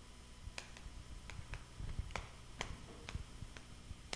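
Chalk writing on a chalkboard: a string of faint, sharp, irregular ticks as the chalk strikes and drags across the board.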